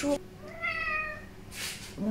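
A house cat meowing once, a single drawn-out meow falling slightly in pitch, followed by a short breathy hiss near the end.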